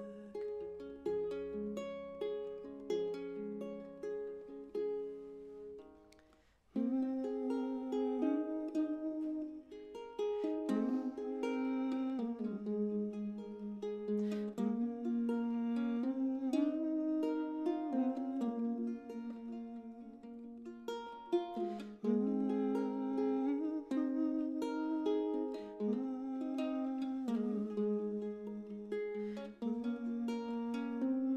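A ukulele playing an instrumental passage on its own, plucked note by note. The first phrase fades away about six seconds in, and a new phrase starts just under seven seconds in and runs on.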